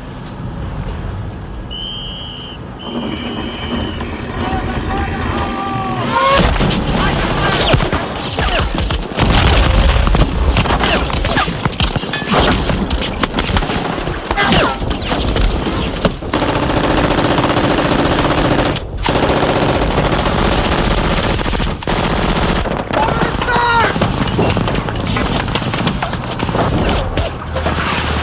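Battle sound of a beach landing: machine-gun fire and rifle shots in dense, rapid bursts, with men shouting. It starts fairly low and grows loud about six seconds in, staying intense after that.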